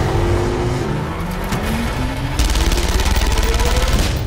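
A car engine revving hard, its pitch climbing steadily, with tyres skidding on gravel, mixed under trailer music. A harsher hiss joins a little past halfway.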